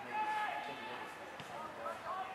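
Voices calling and shouting across an Australian rules football ground during play, with one short knock about a second and a half in.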